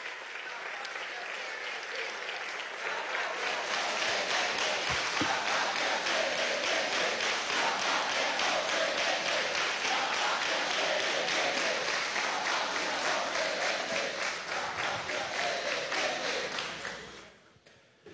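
A large crowd of deputies applauding in an assembly chamber, the clapping swelling over the first few seconds, holding steady, and dying away near the end.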